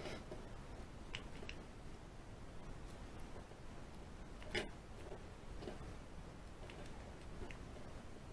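Faint small clicks of a lock pick and tension wrench working inside a lock held in the hand, with one sharper click about four and a half seconds in.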